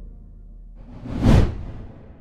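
Low background music fading out, then a single whoosh sound effect from a logo animation, rising to its peak just past a second in and dying away.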